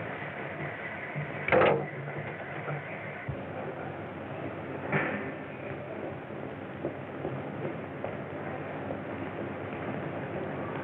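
Steady hiss of an old film soundtrack, with a loud knock about one and a half seconds in and a softer one about five seconds in.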